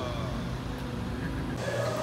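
Steady low hum of a car, heard from inside the cabin, with a deep rumble that cuts off abruptly about one and a half seconds in.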